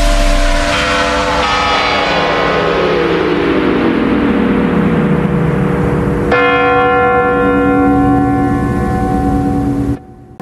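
Bells ringing, with one tone sliding steadily downward over several seconds. About six seconds in a new bell-like chime strikes and rings on until it is cut off.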